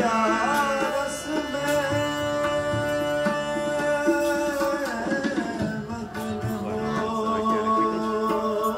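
Sikh kirtan in classical raag style: voices singing gurbani over a held harmonium, with tabla keeping the rhythm.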